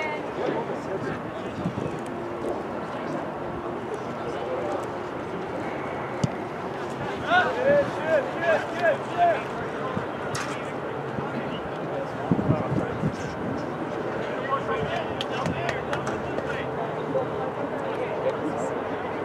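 Voices of players and onlookers calling out across a soccer field during play, with a quick run of five or six short shouts about halfway through.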